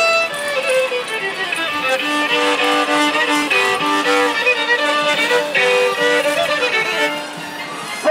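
A solo violin plays a lively tune, one note at a time in short stepped phrases, and goes softer near the end.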